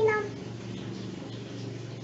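A single short meow, rising then falling in pitch, like a cat's, fading out just after the start. Then a faint steady hum of room tone.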